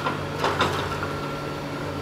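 Steady low drone of construction machinery such as excavators running, with a thin steady whine above it.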